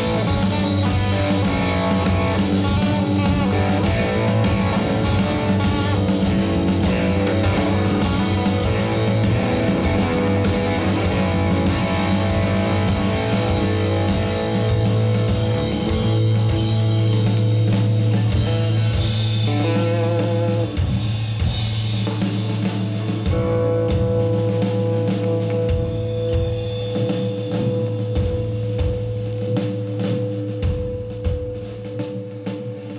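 Live rock band playing: electric guitar, bass guitar and drum kit. The music thins out after about twenty seconds into a single steady held note over scattered drum hits.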